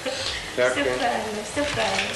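People talking over a hissing background noise.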